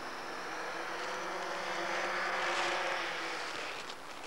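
Rally car's engine at high revs as the car approaches over snow and passes close by, the note held steady and growing louder to a peak about two and a half seconds in, then easing off.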